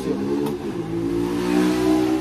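A motor vehicle's engine running with a steady hum, growing a little louder through the moment.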